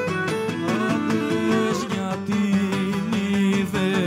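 Live Cretan folk dance music: a bowed lyra carrying the melody over strummed laouta, at a lively, even dance beat.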